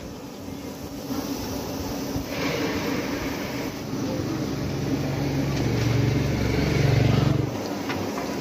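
Battered chicken chops sizzling as they deep-fry in a large karahi of hot oil. A low rumble comes in halfway through, is loudest near the end, and cuts off shortly before the end.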